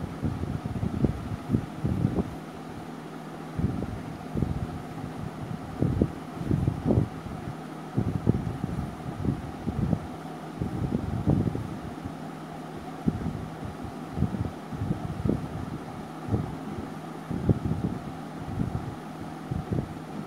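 Irregular low rumbling gusts over a faint steady hum, like air buffeting the microphone.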